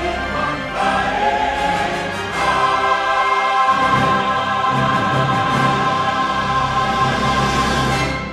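Choir singing with orchestral accompaniment in a closing musical passage, swelling about two and a half seconds in into a long held chord.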